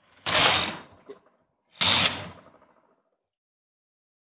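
Carriage of a 1970s Brother knitting machine pushed across the needle bed, sliding twice with a short scraping rattle, about a second and a half apart.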